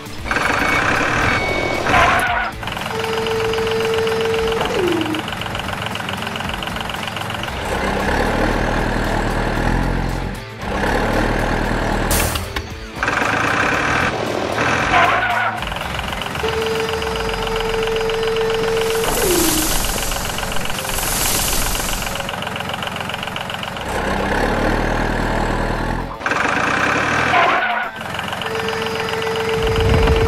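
Background music mixed with dubbed truck engine sound effects. A steady tone that slides down in pitch at its end comes round three times, about every 13 seconds.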